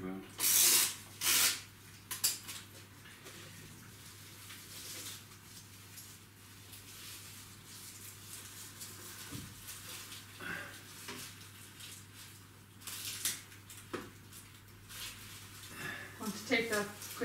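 A Christmas decoration being handled and hung by hand: bursts of rustling, loudest twice within the first second and a half and again near the end, with a few light knocks.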